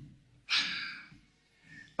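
A man's short, breathy exhale, like a sigh, about half a second in, fading over half a second.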